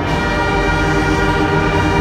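School concert band playing, the brass and woodwinds holding a sustained chord.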